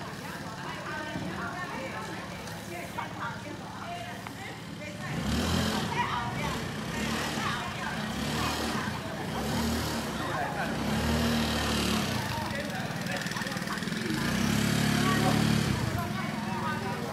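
Indistinct voices of people talking, with a motor scooter's small engine running close by from about five seconds in, a low throb that grows louder near the end.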